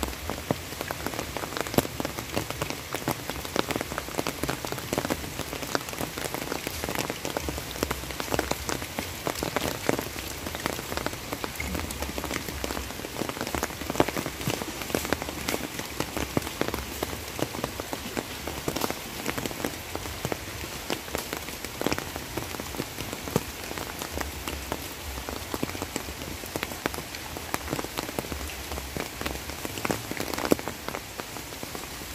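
Steady rain falling, a dense even hiss with many separate drops ticking sharply close by.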